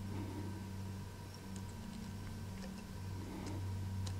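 A low, steady hum, with a few faint light clicks from hands working thread over a foam fly body at the vise.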